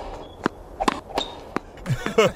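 Tennis ball being hit by racquets and bouncing on a hard court during a rally: three sharp pops within the first second and a half.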